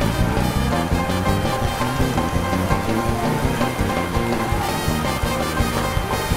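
Upbeat gospel church music with a driving beat, with the congregation clapping along.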